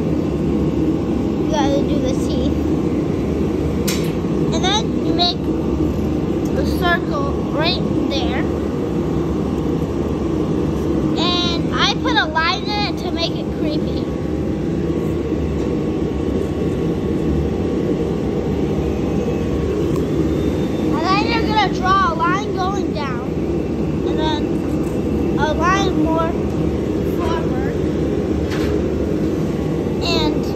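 A steady low drone, with high-pitched voices calling out in short spells several times over it.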